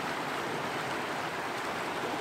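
Shallow creek water flowing over rocks: a steady rush.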